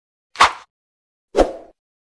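Two short pop-like sound effects about a second apart, each fading away quickly, accompanying a logo intro animation.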